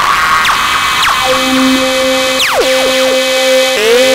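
Electronic music: a noisy synthesizer wash with sweeping pitch glides. Steady held synth tones come in about a second in, and a sharp falling sweep follows near the middle.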